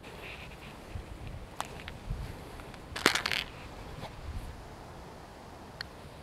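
Quiet outdoor ambience with light wind rumble on the microphone, broken by a few faint clicks and a brief rustle about halfway through as the golfer moves about on the green.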